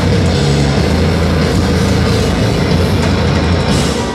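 A hardcore band playing live through a festival PA: loud distorted guitars, bass and drums in a dense, steady wall of sound. Heard from within the crowd. The full band thins out right at the end.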